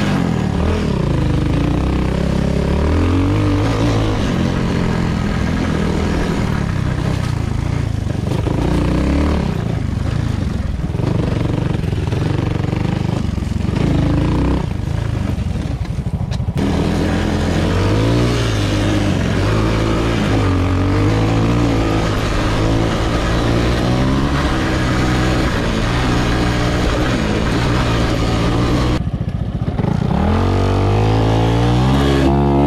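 2017 Honda Grom's 125 cc single-cylinder four-stroke engine, through an Arrow X-Kone exhaust, revving up and down under load off-road, its pitch rising and falling with the throttle. The sound changes abruptly about halfway through and again near the end.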